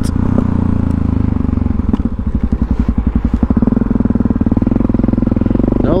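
Supermoto motorcycle engine running while riding, heard from a helmet camera. About two seconds in, the individual exhaust pulses stand out as a rapid, even beat for a second or so, then the engine settles back to a steadier note.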